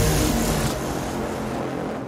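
Tail of a TV show's closing jingle: an electronic music sting with a car engine sound effect, fading away steadily.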